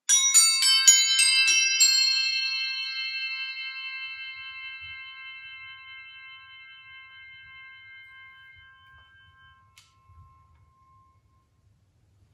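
Crotales, tuned metal discs, struck with mallets in a quick run of high bell-like notes over about two seconds. The notes are then left to ring on together, fading slowly over about eight seconds.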